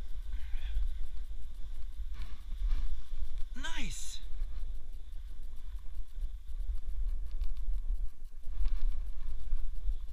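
Snowboard sliding and scraping over snow, with wind buffeting the body-worn camera's microphone as a steady low rumble. About three and a half seconds in, a short voice call drops sharply in pitch.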